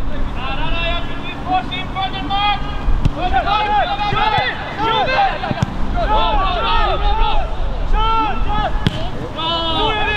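Several voices calling and shouting out on a football pitch during play, over a low rumble of wind on the microphone.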